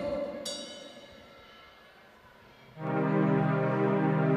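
A live band starts a song. After a fading tail of sound dies away to a hush, a held chord of steady notes comes in sharply about three seconds in.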